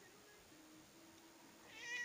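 Near silence, then a single cat meow near the end that falls in pitch.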